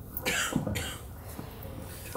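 A person coughs close to a handheld microphone: one short cough and a smaller second one, then a soft knock from the microphone being handled about three-quarters of the way through.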